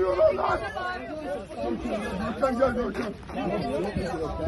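Several people's voices talking over one another, the words indistinct.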